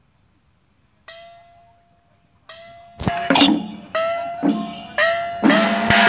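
Chinese gong struck once, ringing with a tone that bends slightly upward, struck again, then from about halfway gongs and cymbals clash together about twice a second, loud, in a procession percussion beat.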